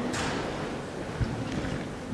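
Room tone of a large hall: a faint steady hiss with one soft low thump a little past the middle.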